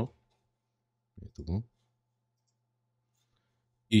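Speech only: a short spoken utterance about a second in and a word starting near the end. Between them is near silence with a faint steady low hum.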